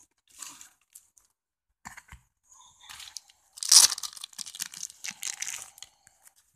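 A mailed package being torn open by hand: short bursts of ripping and crinkling of paper and plastic packing, in fits and starts. The loudest rip comes about four seconds in.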